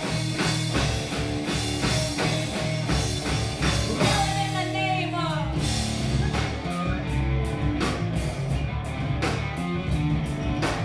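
Live rock band playing: electric guitars and a drum kit keeping a steady beat. About four seconds in the beat drops out briefly under a run of falling notes, then comes back in.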